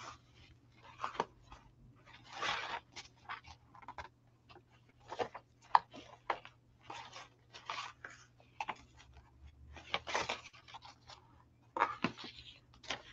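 Paper rustling and crinkling in short, irregular handling sounds as hands move a loose paper tag and turn the layered pages of a handmade junk journal.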